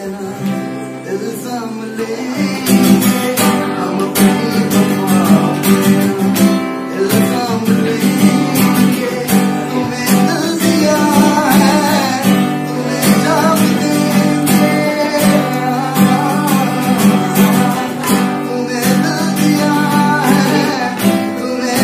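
Acoustic guitar strummed in a steady rhythm, growing louder about two seconds in. A man's singing voice comes in over it in the second half.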